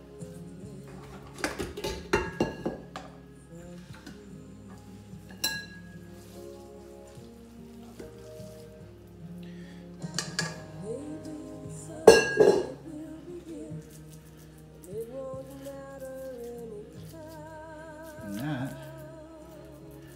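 A spatula scraping and knocking against a stainless steel KitchenAid mixer bowl as ground-meat mixture is scraped out into a loaf pan: scattered clinks and knocks, the loudest about twelve seconds in. Background music plays throughout.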